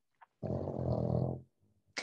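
A dog snoring: one snore about a second long, starting about half a second in.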